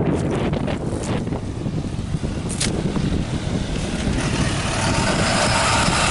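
A flatbed truck approaching over the road crossing, its engine and tyres growing louder from about four seconds in.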